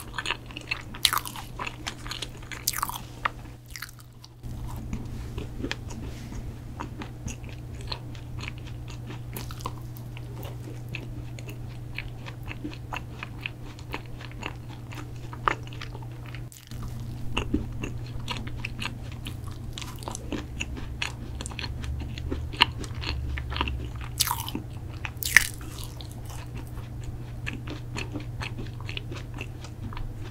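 Close-miked biting and chewing of Lab Nosh protein cookies: many small crisp crunches and crumbly clicks over a steady low hum.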